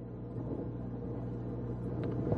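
Room tone: a steady low hum under a faint hiss, with no distinct events.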